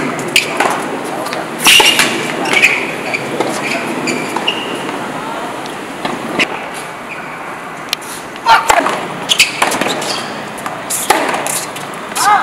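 Tennis rally on an outdoor hard court: sharp pops of racquets striking the ball and the ball bouncing, at irregular intervals, with voices in between.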